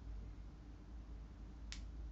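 A single sharp click about three-quarters of the way through as a hairpin is fastened into the hair, over faint room tone.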